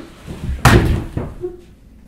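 A single sudden loud slam about two-thirds of a second in, dying away within half a second.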